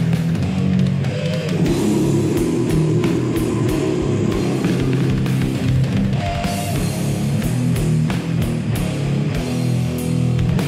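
A heavy metal track playing: distorted electric guitars over bass and a drum kit, with steady drum hits throughout.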